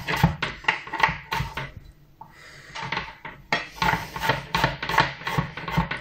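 Kitchen knife chopping peeled raw potatoes into coarse cubes on a plastic cutting board. The blade knocks on the board in quick repeated strokes, pauses about two seconds in, then picks up again.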